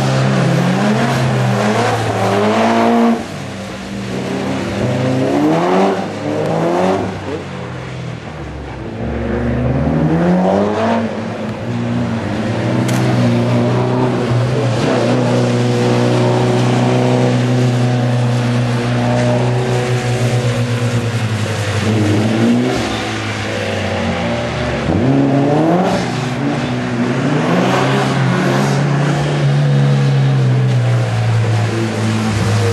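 Mitsubishi Lancer Evolution's turbocharged 2.0-litre four-cylinder engine revving up and down again and again while the car slides on a flooded skid pan, with the hiss of water spray off the tyres.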